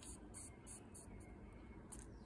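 Near silence with a few faint, brief rustles of a paper quilling strip being rolled and tugged on a metal slotted tool.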